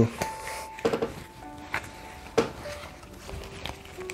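Soft background music of long held notes, with a few light clicks and taps of tarot cards being handled.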